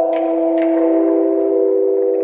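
Sustained electronic chord from the outro logo sting: several steady tones held together, with brief faint swishes about a quarter and half a second in.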